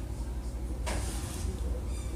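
Room tone: a steady low hum of background noise, with one short soft rush of noise about a second in.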